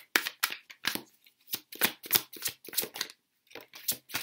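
A deck of tarot cards being shuffled and handled by hand: a string of quick, crisp card flicks and slaps, about three or four a second.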